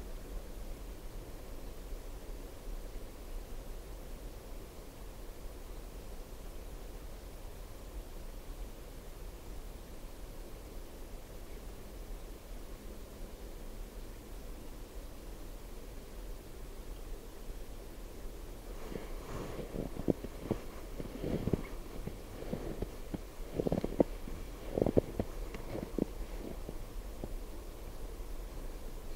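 Faint low steady rumble, then, from about two-thirds of the way through, a run of irregular crunching footsteps in snow.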